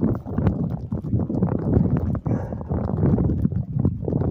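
Footsteps on brick paving mixed with dense, irregular rubbing and knocking from a hand-held phone being carried while walking.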